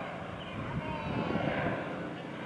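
DHC-2 Beaver floatplane's radial engine and propeller droning as it flies past low, swelling louder about halfway through.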